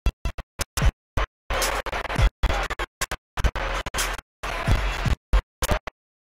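CB radio receiver putting out bursts of static and garbled signal that cut in and out abruptly, a dozen or so short chunks with dead silence between them and a few falling tones.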